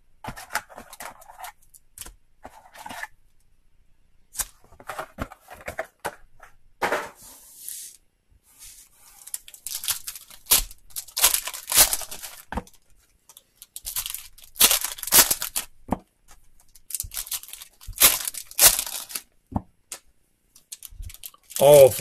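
Foil trading-card packs being torn open and their wrappers crinkled by hand: a run of short, sharp rips and crackles at irregular intervals.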